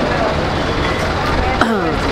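Bus engines running with a steady low rumble amid background voices; a voice calls out briefly near the end.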